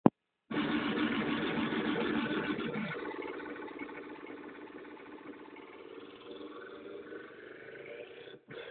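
Distorted, dense playback from CD turntables and a beat machine. It cuts in abruptly after a click about half a second in, stays loud for a couple of seconds, then fades gradually quieter.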